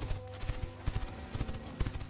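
Galloping hoofbeats sound effect: rapid, irregular clopping over a low rumble, the headless mule's gallop.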